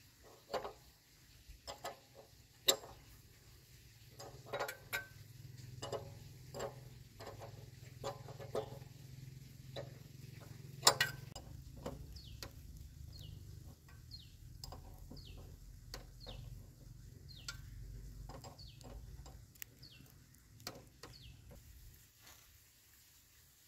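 Irregular metal clicks, taps and a few sharper knocks from hand tools working on a Honda motorbike's rear drum brake and its adjuster. From about halfway through, a bird's short falling chirps repeat roughly once a second.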